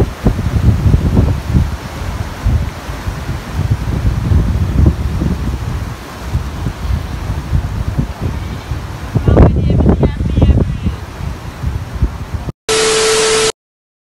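Wind rumbling on the microphone with scuffing handling noise, and muffled, unclear voices about nine to eleven seconds in. Near the end the sound drops out, a short steady beep with hiss cuts in for under a second, and then there is dead silence.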